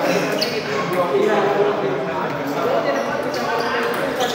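Table tennis ball clicking off rackets and the table during a serve and rally, with voices chattering in a large echoing hall.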